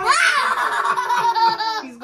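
People laughing loudly: a man's long drawn-out laugh, with a young girl laughing too.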